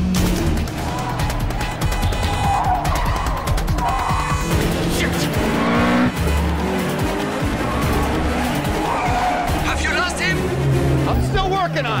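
Car-chase soundtrack mix: cars' engines revving and tyres squealing over a dramatic orchestral score, with a police siren wailing in the last couple of seconds.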